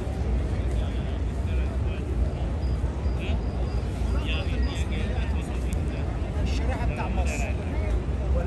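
Crowd chatter, many voices mixed together over a steady low rumble.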